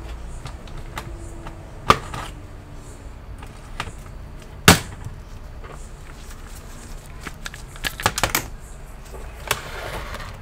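Sharp clicks and knocks from working on a laptop's hinge assembly. There are two loud snaps about two and nearly five seconds in, the second the loudest, then a quick run of clicks near the end.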